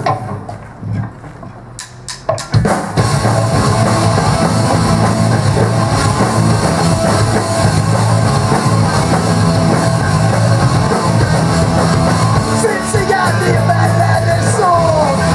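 Live rock band of electric guitar, electric bass and drum kit kicking into a song about two and a half seconds in, after a few sharp clicks, then playing loud and steady. Singing comes in near the end.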